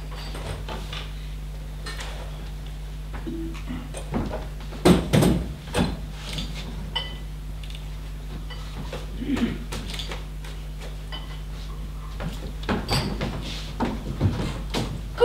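Glassware being handled and set down on a table: scattered clinks and knocks, the loudest cluster about five seconds in, a few with a short ring. A steady low electrical hum runs underneath.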